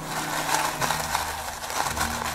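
White crinkle-cut paper shred filler rustling and crackling as a hand presses a hollow into it inside a cardboard gift box.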